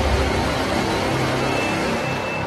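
Sound effect of an animated fire-logo intro: a loud, deep rumbling rush of noise that slowly fades, with a faint high tone coming in near the end.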